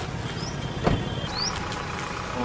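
Vehicle engines idling with a steady low hum, a sharp click just before a second in, and a couple of short rising high chirps.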